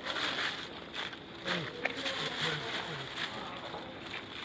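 Thin plastic carrier bag rustling and crinkling as goods are handled and bagged, with a few indistinct words in a man's low voice near the middle.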